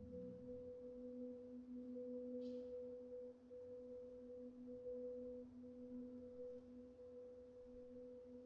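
Marimbas holding two soft, sustained notes an octave apart: quiet, steady tones with no separate mallet strikes.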